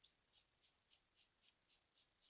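Plastic trigger spray bottle spraying, a faint short hiss with each squeeze of the trigger, about four a second in a steady rhythm.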